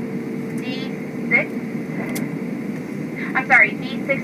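Steady low cabin noise of a Boeing 737-800 taxiing after landing, with a faint steady hum. Brief bits of a cabin PA announcement come through over it, loudest near the end.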